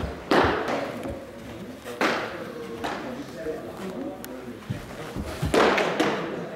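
Baseballs smacking into leather catcher's mitts three times, sharp pops that echo around a large gym, with indistinct voices in between.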